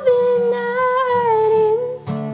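A young woman's voice holding one long sung note, wavering slightly and dipping a little lower near the end, over soft acoustic guitar.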